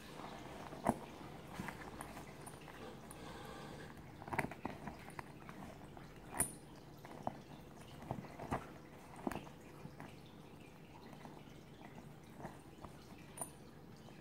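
Faint, scattered crinkles and clicks of fingers picking and tugging at the sealed edge of a waterproof military bag that is hard to open.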